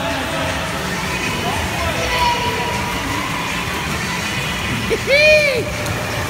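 Steady echoing noise of an indoor swimming pool with a swimmer splashing and faint voices in the background. A man's single long shouted call comes about five seconds in, rising then falling in pitch.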